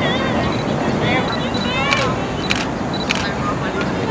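Voices of a group of people outdoors over a steady background noise, broken by four sharp clicks or knocks spread over the few seconds.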